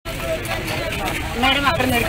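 Several women's voices talking over one another, cutting in abruptly after a moment of dead silence, over a steady low background rumble.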